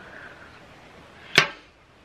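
A single sharp plastic click about one and a half seconds in, from a round makeup compact being handled, typical of its lid catch.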